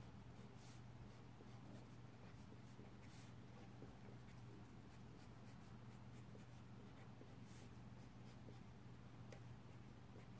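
Faint scratching of a pencil on paper, in a few brief strokes, as boxes are drawn and cells shaded, over a steady low hum.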